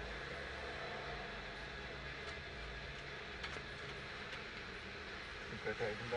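Mercedes-Benz 2.0 turbo engine idling with the car stopped, heard from inside the cabin as a steady low hum. Faint voices come in near the end.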